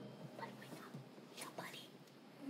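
A girl whispering faintly, with no clear words.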